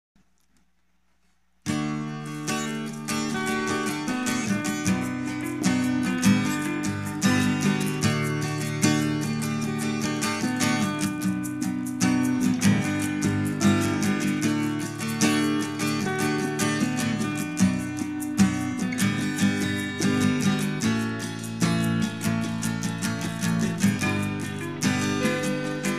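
Instrumental song intro on acoustic guitar, starting suddenly after about a second and a half of silence.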